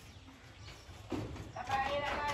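A voice comes in about a second in, after a quieter stretch.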